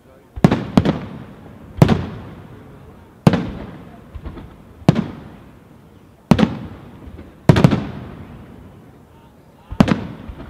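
Aerial firework shells bursting in a display: about eight sharp bangs, some in quick pairs, each trailing off in a long echo.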